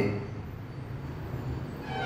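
Low, steady background rumble with a faint hiss, without any distinct event.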